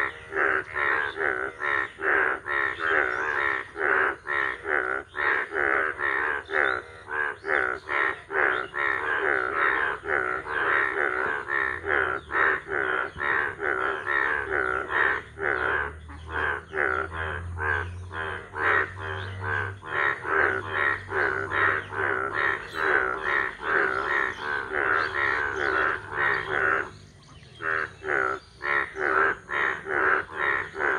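A chorus of Indian bullfrogs calling: loud croaks repeating several times a second, overlapping without let-up, with a short break about 27 seconds in.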